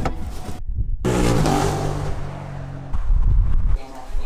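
Car engine running with road noise, heard from inside the car's cabin, after a brief break in the sound about half a second in.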